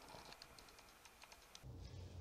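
Near silence with a quick run of faint, irregular clicks from a computer keyboard. Near the end a low hum comes in.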